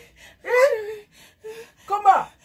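Short wordless vocal exclamations from a person: one about half a second in, and a brief falling one near the end.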